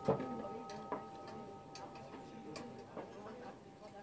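A hushed moment in a symphonic wind band piece: a few held, bell-like tones fade away while light, irregular ticks sound, the first one sharp at the very start.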